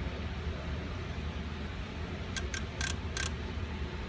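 Steady low background hum with a quick run of four light clicks a little past the middle, from a fingertip working a handheld scan tool's touchscreen.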